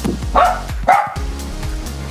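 A Shetland sheepdog barking twice, two short sharp barks about half a second apart, over background music.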